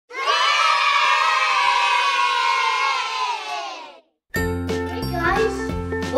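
A group of children cheering and shouting together, fading away after about four seconds. A moment of silence follows, then children's music with a steady bass line starts.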